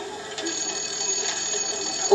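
Electric doorbell ringing steadily, starting about half a second in, heard through a television's speaker.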